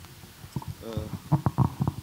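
Handling noise on a microphone: a run of short knocks and rubs with a low rumble, as a questioner from the floor takes up the microphone, along with a brief hesitant 'uh'.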